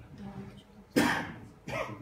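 A person coughing twice: a loud cough about a second in and a weaker one near the end.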